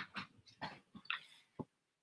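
Footsteps on a wooden floor as a person walks up close: a handful of short, faint knocks.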